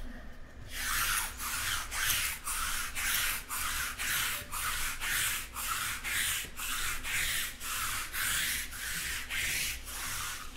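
Rhythmic rubbing strokes, about two to three a second, like a cloth or hand scrubbing back and forth over a surface, starting about a second in.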